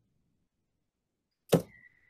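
Silence, then about one and a half seconds in a single sharp computer click as the presentation slide advances, followed by a brief high steady tone that fades away.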